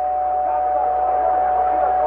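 A steady, unwavering tone held for a few seconds as part of a radio station's jingle, leading into the broadcast's time check.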